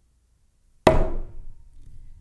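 A gnarled wooden Zen staff struck down once in a single sharp, loud knock, with a short ringing tail that dies away over about a second. It is the Seon teacher's staff blow, given as "this sound" that points to the simple and clear.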